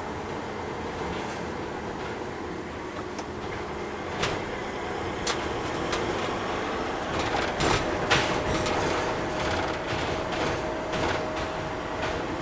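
Inside the cab of a MAN TGE van on the move: its 2.0 four-cylinder turbodiesel running under steady road and tyre noise, with a few sharp knocks and rattles, the loudest about eight seconds in. A steady thin tone joins the running sound from a little past halfway.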